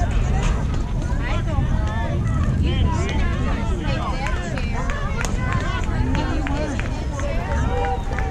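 Many overlapping voices of young softball players and spectators calling out and chattering at once, several of them high-pitched, over a steady low rumble.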